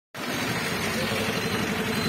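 Truck engines idling in stalled traffic, a steady low rumble with a faint hum above it.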